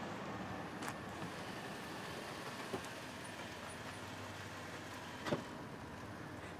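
A Range Rover Sport SUV rolling up slowly and coming to a stop, its engine and tyres a low steady sound. A short click about five seconds in as the car door is opened.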